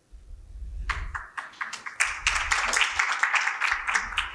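Audience applauding: scattered claps start about a second in and build to steady, dense applause.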